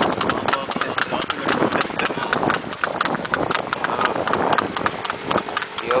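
Horse's hooves clip-clopping on an asphalt road at a trot as it pulls a cart: a steady, quick run of hoofbeats, several a second.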